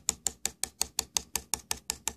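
Rapid, even tapping on the board under a plastic cutting mat, about five or six sharp taps a second, shaking magnetite filings into magnetic field-line arcs.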